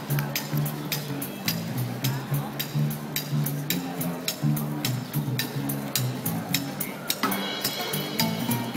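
Street band playing upbeat acoustic music: an upright double bass plucks a moving bass line under acoustic guitar, while a cajon keeps a steady beat of sharp hits. A higher melody joins about seven seconds in.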